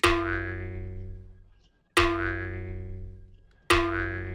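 Cartoon 'boing' sound effect played three times, about two seconds apart, each a sudden springy twang that rings and fades away.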